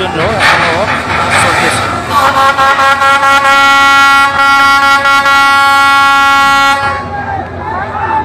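A long, steady horn blast of about five seconds, starting about two seconds in, with people's voices shouting before it.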